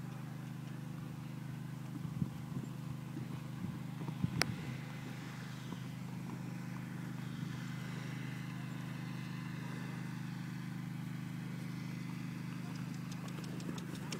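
Hoofbeats of a Thoroughbred horse cantering on grass, a few soft thuds clustered in the first five seconds, over a steady low hum.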